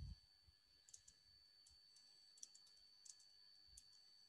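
Faint, irregular keystrokes on a computer keyboard: about ten soft clicks spread unevenly over a few seconds.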